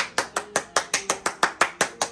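One person clapping, quick and even, about six claps a second.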